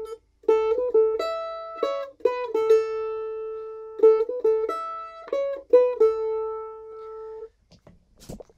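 Mandolin playing a picked single-note lick on the A and E strings, played twice. Each phrase is a quick run of plucked notes that ends on a long ringing open A.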